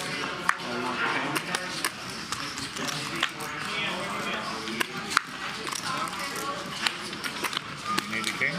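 Background murmur of voices at a casino poker table, with scattered sharp clicks through it.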